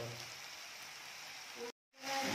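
Sliced onions sizzling in hot oil in a kadai, a faint steady hiss that cuts off suddenly near the end.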